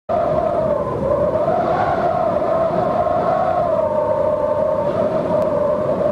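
Eerie sustained tone over a low rumble on the opening-titles soundtrack; the tone slowly wavers in pitch, like a howling wind effect.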